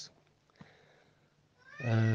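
Near silence for about a second and a half, then a man's voice starts again on a drawn-out, rising vowel that leads into speech.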